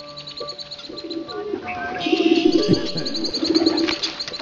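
Birds cooing and chirping over held music notes: three low warbling coos and trains of rapid high chirps.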